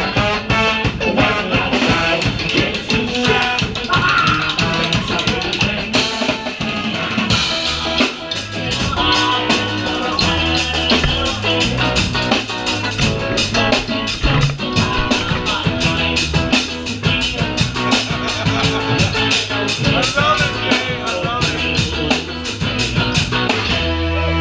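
Live ska-punk band playing loudly: a trombone and trumpet horn section over electric guitar and a drum kit.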